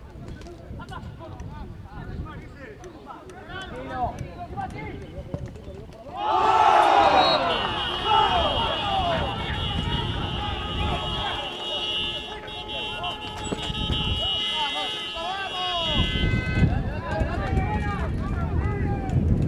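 Football match commentary: a voice calls the play, then breaks into loud excited shouting about six seconds in as a goal is scored, followed by one long held call of about nine seconds.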